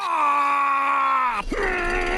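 A cartoon character's long, loud drawn-out yell, its pitch sinking slightly. It breaks off about one and a half seconds in, and a second, shorter held cry follows.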